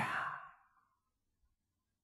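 An elderly man's voice finishing a word and fading out with a breathy trail in the first half second, then near silence.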